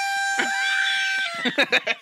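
Party blower sounding one steady tone for about a second and a half, dipping slightly in pitch just before it stops. A few sharp clicks follow near the end.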